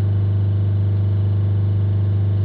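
Land Rover Discovery Sport's four-cylinder diesel engine held at about 3,000 rpm, a steady, unchanging drone with a strong low hum, during a back-pressure check of its freshly cleaned diesel particulate filter.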